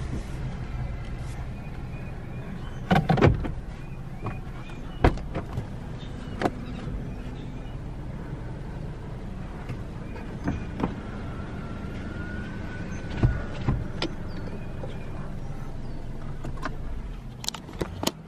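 Car engine idling, heard from inside the cabin as a steady low hum, with scattered light clicks and knocks from inside the car.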